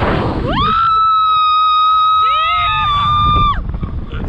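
A woman's long, high, steady scream on a Slingshot catapult ride. It swoops up to pitch about half a second in, is held for about three seconds, and cuts off near the end. A shorter second voice rises briefly under it about two seconds in.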